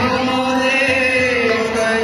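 Group of voices chanting a devotional song in long held notes, with steady musical accompaniment.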